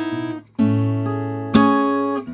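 Samick GD-101 acoustic guitar, straight from the box, played with a thin nylon pick. A ringing chord is cut short about half a second in, a new chord is struck and rings out, and another is struck about a second and a half in.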